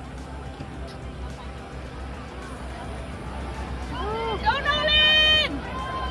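Outdoor crowd murmur along a race finish line, then a loud, drawn-out shout from one spectator about four seconds in, cheering a runner toward the finish, which breaks off after about a second and a half.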